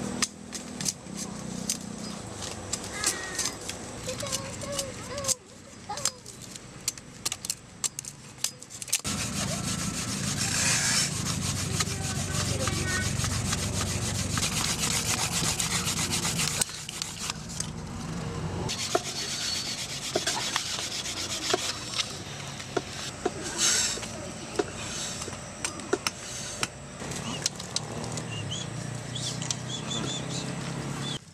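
Bamboo fire saw: a bamboo strip rubbed hard back and forth across a split bamboo section to make fire by friction, a steady rasping that runs for several seconds in the middle. Scattered knocks and taps come before and after it.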